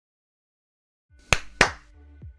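Two sharp hand claps about a third of a second apart, after a second of silence.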